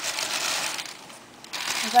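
Paper packing material crinkling and rustling as it is handled and pulled from a box, with a brief lull after about a second.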